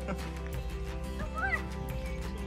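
Background music, with a woman laughing at the start and a short, high yip from a yellow Labrador puppy about a second and a half in.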